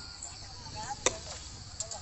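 A single sharp click about a second in, over a low steady rumble and faint snatches of voices.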